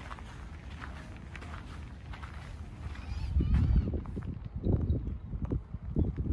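Outdoor ambience: a bird chirping a few times over a steady low rumble, with several louder low thumps in the second half.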